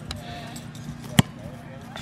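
A soccer ball struck once: a single sharp thud about a second in, over a low steady hum and faint distant voices.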